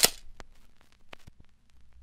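Logo-animation sound effect: one sharp metallic clang right at the start, then a scatter of faint clicks fading out.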